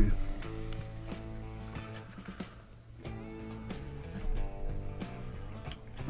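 Background music of steady held notes, with a few faint knocks and rustles from a knife and leather sheath being handled.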